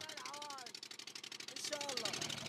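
Boat engine running with a rapid, even pulse, under men's voices talking close by; the engine is running poorly.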